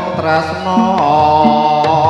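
Live jaranan dangdut music: a held, wavering melody line over strokes of a kendang hand drum.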